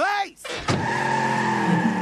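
Cartoon sound effect of a van speeding away: engine noise and screeching tyres, setting in just under a second in and holding steady, after a brief cartoon voice at the start.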